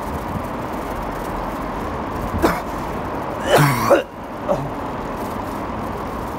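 Steady car cabin noise, the engine and tyres running on the road inside a tunnel. Two short voice sounds break through around the middle, the second louder.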